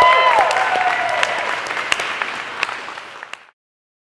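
Audience applauding, with a voice calling out over it at the start. The applause fades and cuts off abruptly about three and a half seconds in.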